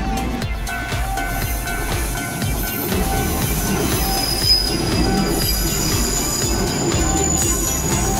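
Passenger train rolling past close by, with a rumble of wheels on rail and thin high wheel squeal that rises and falls from about halfway through.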